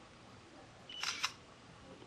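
Samsung Galaxy Ace's camera app playing its synthetic shutter sound through the phone's small speaker as a photo is taken with the on-screen button: a short tone and then a quick two-part click about a second in.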